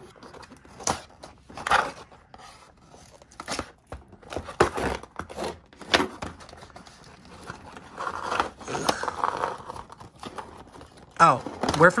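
Scissors snipping and cutting through tape on a cardboard doll box, with irregular clicks, scraping and tearing of cardboard and tape as the flaps are pried apart.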